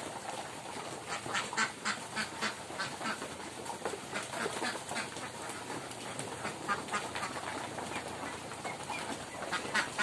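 A large flock of domestic ducks quacking continually at feeding time, many short overlapping calls, busiest in the first half and again near the end.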